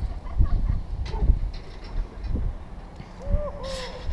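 Wind noise rumbling on the microphone high on an exposed chimney top, with a few faint knocks. Near the end comes a short hooting call from a person's voice, its pitch rising and falling a few times.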